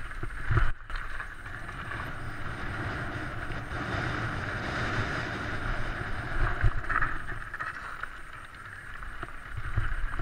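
Mountain bike riding fast down a rough trail of loose slate: tyres rumbling and crunching over stones and the bike rattling, with wind rushing over the microphone. A few sharp knocks from hard hits stand out just after the start and again around two-thirds of the way through.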